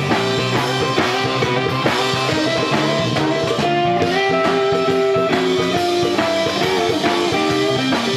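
Live band playing an instrumental rock jam: electric guitar playing held and bending lead notes over bass guitar and a steady drum-kit beat.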